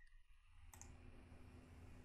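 Near silence with a faint computer mouse click about three-quarters of a second in, over low room hum.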